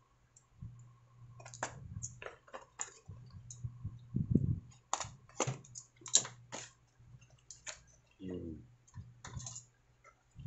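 Small spring snips cutting the packing tape along a cardboard box's seam and scraping against the cardboard: irregular sharp clicks and snips, loudest about five to six seconds in.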